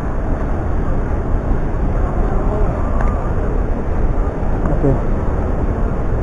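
Steady low rumble of a busy indoor public hall, with faint, indistinct voices in the background.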